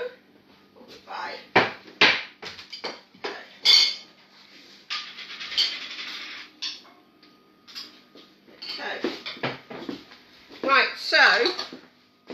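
Knocks and clinks of plates and dishes being handled, several sharp ones in the first few seconds, then a rustle; a voice is heard near the end.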